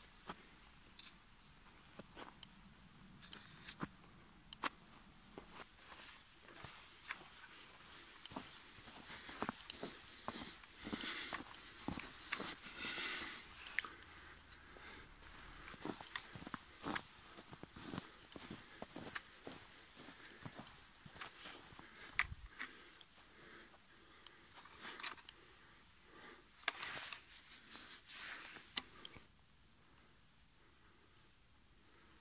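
Footsteps crunching in fresh snow, faint and irregular, with busier stretches around the middle and near the end, then stopping a second before the end.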